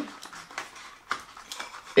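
Soft handling noise of a cardboard product box being rummaged through, a few light taps and scrapes of cardboard.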